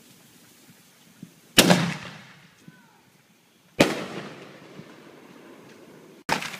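Two fireworks explosions about two seconds apart, each a loud sharp bang that fades out, the second more slowly.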